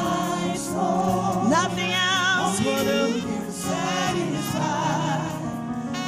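Live gospel worship song: a woman leads the singing with a man singing alongside her, over steady musical accompaniment. About two seconds in, a voice holds a note with vibrato.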